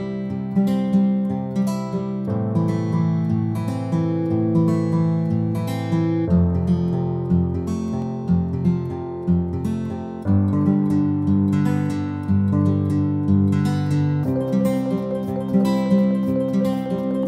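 Background music: acoustic guitar picking a steady pattern, the chords changing about every four seconds.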